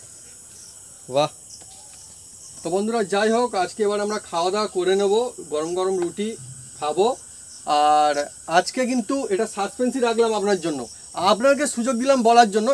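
Night crickets chirring steadily in a high, thin band. A man's voice talks over them from about two and a half seconds in.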